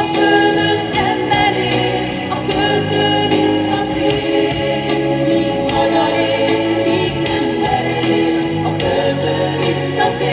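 Music: a choir singing slow, held notes.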